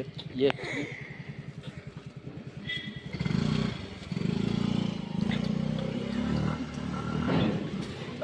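Motorbike engine idling with a low, even throb that grows louder about three seconds in and holds steady.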